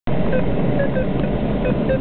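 Steady airflow noise in the cockpit of a K6 glider in flight, with a few short, same-pitched beeps from an audio variometer, the kind of tone that signals the glider is climbing.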